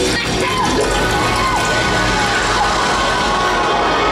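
Loud, dense stage music and sound effect for a burst of toilet water in a live musical, with shouts or screams over it.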